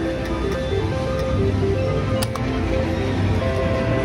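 Electronic slot-machine music and tones in a casino, short steady notes stepping between pitches over a low hum, while the reels spin. A single sharp click comes a little past two seconds in.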